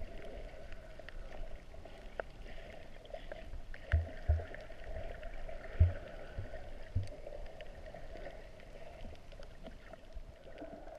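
Underwater ambience recorded with the camera submerged: a steady muffled water hiss scattered with faint clicks. A few short low thumps come between about four and seven seconds in, the loudest near six seconds.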